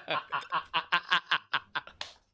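A man laughing in quick, repeated chuckles that fade out near the end.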